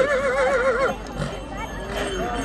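A horse whinnying: one long, wavering call that breaks off about a second in.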